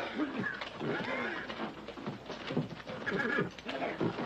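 A horse whinnying again and again in quick succession, with sharp knocks of hooves between the cries.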